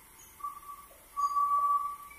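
Two whistled notes at the same steady pitch: a short one about half a second in, then a longer held one.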